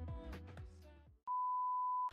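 Background music fades out over the first second, and after a brief gap a steady single-pitch test-tone beep starts, the tone that goes with TV colour bars, used here to mark an interruption.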